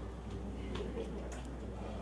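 Low steady electrical hum under faint, indistinct murmuring voices, with a few soft clicks.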